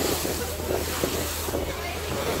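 Boat running at speed through choppy sea: water rushing and splashing along the hull, with wind buffeting the microphone.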